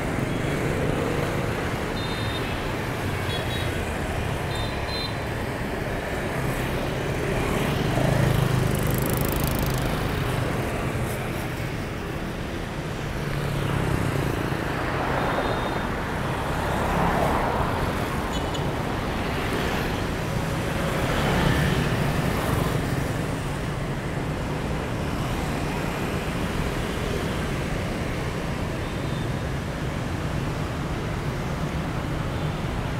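City street traffic: motorbikes and cars driving past, a steady run of engine and tyre noise that swells as vehicles go by every few seconds.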